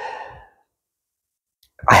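A woman's soft, breathy sigh in the first half second, a sign of how strongly she reacts to the scent she is describing.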